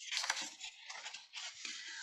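Sheet of paper rustling and crinkling under hands, a soft irregular crackle that is strongest at first and then fades to a few light scuffs.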